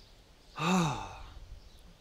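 A man's audible sigh about half a second in: a voiced breath out that rises and falls in pitch and trails off into breath.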